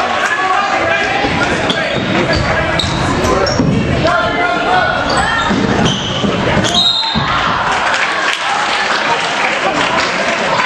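A basketball bouncing on a hardwood gym floor amid a steady mix of spectators' and players' voices, echoing in a large hall.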